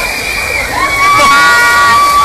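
Several people shouting and whooping in long, high, held cries that overlap and peak in the second half, over the steady noise of heavy rain and wind.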